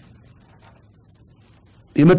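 A pause in studio talk: faint steady room hiss, then speech starting again right at the end.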